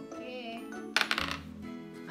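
A small die clattering across a tabletop about a second in, a quick run of sharp clicks, over light background music.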